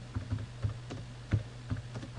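Computer keyboard being typed on: a run of separate key clicks at an uneven pace, over a low steady hum.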